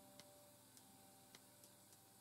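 Faint, uneven taps of an ink pen tip dotting the paper while stippling, a few in two seconds, over the fading tail of a guitar chord from background music.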